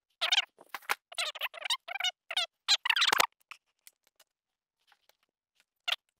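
A small tool wedged under the edge of a cured fiberglass panel, prying it off a melamine tabletop: a quick run of short, squeaky, crackling scrapes for about three seconds, then faint ticks and one sharp click near the end.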